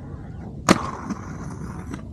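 A sharp clack about two-thirds of a second in, then a steady scraping slide: aggressive inline skates landing on and grinding along a ledge or rail.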